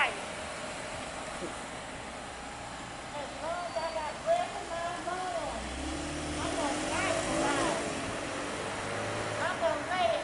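A police patrol car driving slowly past, its engine a low rumble that comes up about halfway through. People are talking in the background throughout.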